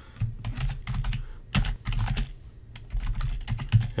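Typing on a computer keyboard: a quick, uneven run of keystrokes entering a short phrase.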